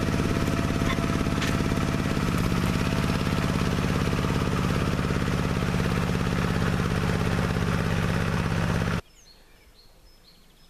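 Homemade four-wheel-drive minitractor engine running steadily under load while pulling a plough through the soil. It cuts off abruptly about nine seconds in, leaving only faint outdoor background.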